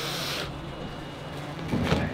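A short dry hiss of hands working chalk, lasting about half a second, then a steady low room hum.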